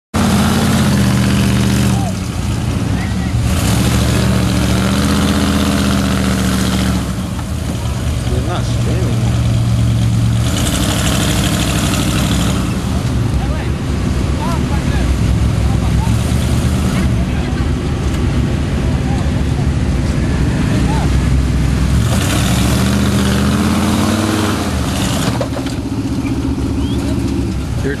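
Big-block V8 of a lifted Chevy truck running under load against a tow rope, revving hard in several long surges and dropping back in between.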